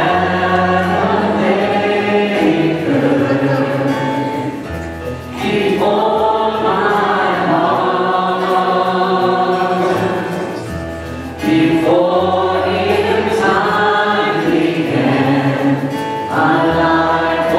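Church worship choir and praise band performing a gospel worship song, with voices singing over guitars, keyboards and held bass notes. The music comes in sung phrases of about five to six seconds each.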